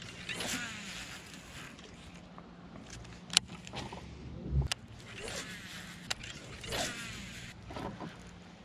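Baitcasting rod and reel handled and cast: a few sharp clicks from the reel and the faint whizz of line paying out, over a low steady hum.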